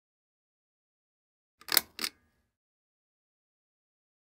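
Silence broken about two seconds in by two quick bursts of noise, the first louder, about a quarter of a second apart.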